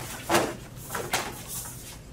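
Fast uniform and contact noise as two martial artists run through a Kenpo technique at speed: sharp fabric snaps and slaps, the loudest about a third of a second in, then two quicker ones about a second in.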